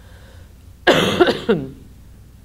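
A woman coughing, a short fit of two or three coughs about a second in.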